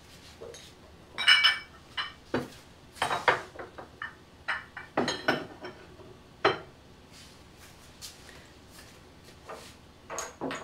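Polish stoneware pottery clinking and knocking as pieces are handled and set down on wooden shelves: a run of sharp ceramic clatters, some with a short ring, loudest about a second in, thinning to a few light taps in the last few seconds.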